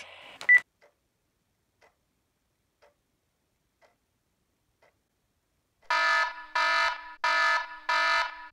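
A short beep about half a second in, then faint ticks about once a second, then from about six seconds a loud repeating electronic alarm, about three pulses every two seconds: the emergency communication link calling.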